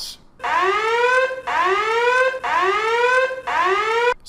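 Electronic alarm sound effect: four whoops about a second apart, each rising in pitch, starting shortly after a brief pause.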